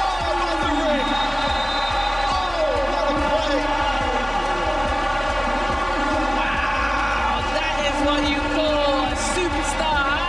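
Background music over basketball arena sound: crowd voices, with a ball bouncing on the court now and then.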